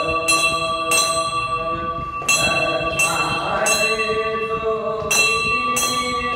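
Brass temple bell struck repeatedly at an uneven pace, about seven strikes, each ringing on with a steady, high, overlapping tone.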